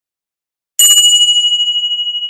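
Silence, then about a second in a single bell-like ding sound effect: one sudden strike that rings on in several clear high tones and slowly fades.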